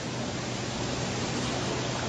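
Steady hiss with a low, steady hum underneath: the background noise of an old lecture recording in a pause between speakers.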